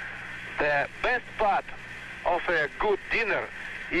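Speech: a voice talking in an old film recording that sounds thin and radio-like, with a steady low hum under it.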